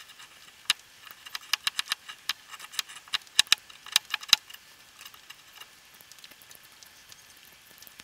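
A TBS Grizzly knife blade shaving curls off a resinous fatwood stick: a quick run of sharp scraping strokes for about four and a half seconds, then only faint scattered ticks.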